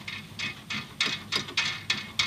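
Small metal clicks and light rattling as a boiler pipe's locking nut is spun loose by hand: a quiet start, then half a dozen irregular ticks in the second half.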